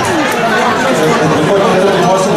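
Crowd chatter: many people talking over one another at once, a steady hubbub of voices.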